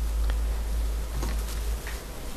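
Steady low hum of recording background noise, with three faint clicks about a second apart.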